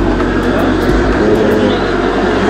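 Wind buffeting the microphone: a loud, steady rumble with low gusts swelling and easing.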